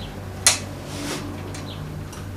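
A single sharp snap about half a second in, then a few lighter clicks, from electrical leads and clips being handled and connected at the workbench, over a steady low hum.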